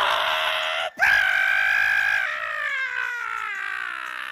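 A long drawn-out vocal yell, held steady about a second and then sliding slowly down in pitch for another two, after a short harsh burst of noise in the first second.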